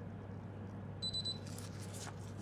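A short, high electronic beep about a second in, over a steady low hum, followed by faint rustling.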